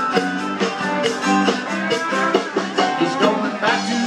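A live band playing an upbeat country-rock song, with guitar over a steady beat.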